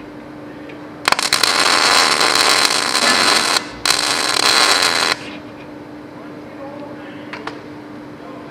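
MIG welder arc crackling on steel as two tack welds are laid on a patch plate: one burst of about two and a half seconds, a brief break, then a shorter one of about a second and a half. A steady low hum runs underneath.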